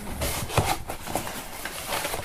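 Cardboard shipping box being handled and opened: irregular scraping, rustling and light knocks of the cardboard and its flaps.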